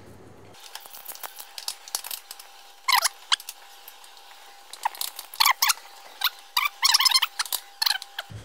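Chef's knife cutting cooked octopus tentacles on a wooden cutting board: a run of quick cuts knocking on the board, coming in bursts and busiest near the end.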